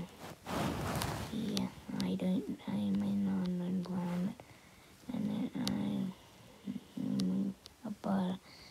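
A person's voice, words indistinct, in broken phrases with one long held note about three seconds in, and a breathy rush of noise near the start.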